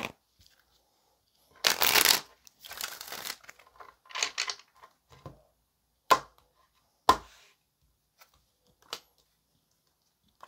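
Tarot deck being shuffled by hand in three short rustling bursts, the first the loudest, followed by three sharp taps about a second or two apart as cards are laid down.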